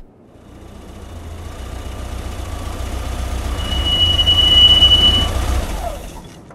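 A car pulling up: a low engine and road rumble grows louder, then a high, steady brake squeal lasts about a second and a half as it slows to a stop, and the rumble fades.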